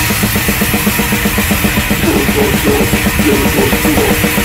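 Hardcore punk band playing: a fast, driving drum-kit beat under guitar and bass, dense and loud.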